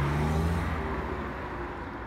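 A car driving away, its low engine hum fading steadily.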